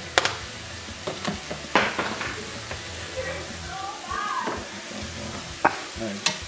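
Cut apples frying in butter in a saucepan over medium-high heat, sizzling steadily, with a few sharp clicks and knocks from utensils at the pan.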